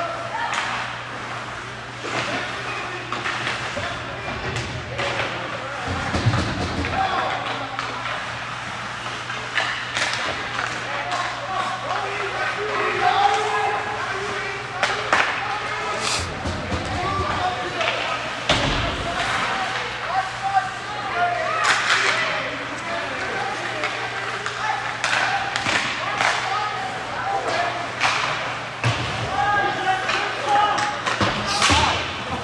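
Ice hockey play in an indoor rink: pucks, sticks and players thudding and slamming against the boards at irregular moments, over indistinct voices of players and spectators and a steady low hum.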